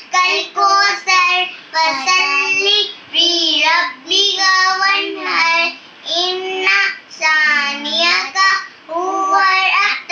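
A young girl singing without accompaniment, in short phrases with brief pauses between them.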